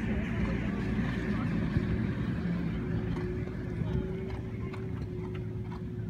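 Hoofbeats of a horse cantering on a sand arena, heard as faint short thuds mostly in the second half, over a steady low hum.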